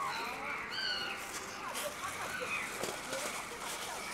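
Faint chatter of distant voices, with a few short high calls about a second in.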